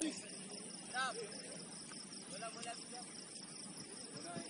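Crickets chirping steadily in a high, evenly pulsing trill, with a distant shout about a second in and a few fainter calls after it.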